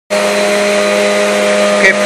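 A loud, steady, machine-like hum holding a few fixed low tones. A man's voice starts just before the end.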